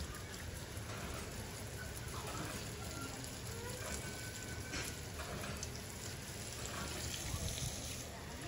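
Garden hose spray nozzle misting water over potted bonsai trees, a steady hiss of fine spray falling on the leaves, moss and wet concrete.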